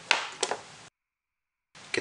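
A few light clicks and rustles of multimeter test probes and leads being handled and set down, then the sound drops out completely for almost a second.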